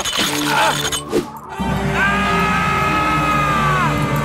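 Cartoon ice cracking and shattering as the ice axe tears loose from the ice wall, followed by a long high scream that drops in pitch at the end as the climber falls. Dramatic background music plays underneath.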